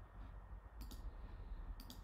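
Clicking at a computer: two pairs of short, sharp clicks, one about a second in and one near the end, over a faint low hum.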